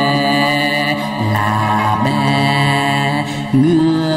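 Male singer performing a Vietnamese quan họ folk song into a microphone, holding long notes with wavering ornaments, with brief breaks between phrases.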